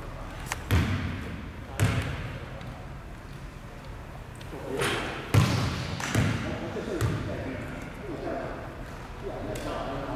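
A basketball bounced on a wooden sports-hall floor, five separate thumps with a short ringing echo after each, the loudest about five seconds in. Voices talk in the background.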